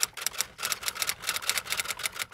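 Typewriter key-strike sound effect: a quick, even run of clicks, about eight a second, as the on-screen title is typed out letter by letter.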